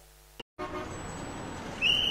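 Street traffic noise, then a car horn sounding near the end and holding one steady note.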